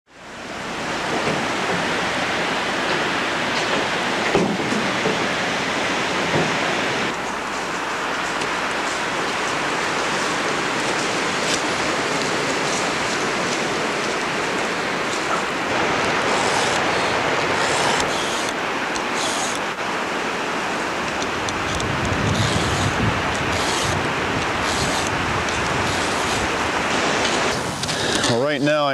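A loud, steady hiss with faint crackles in it, like wind or radio static.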